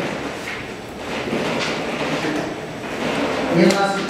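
Indistinct low talk around a meeting table, with rustling and sliding handling sounds; a man's voice speaks up near the end.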